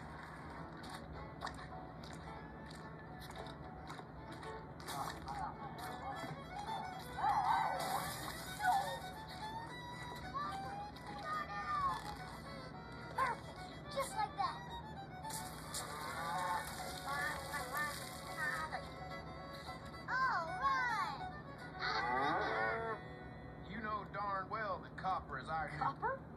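Animated film soundtrack playing from a computer's speakers: music with a cartoon puppy's howls that glide up and down in pitch.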